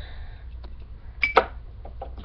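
A single short knock with a brief clink, about a second and a half in, as a small object is handled on a shelf, over a low steady hum.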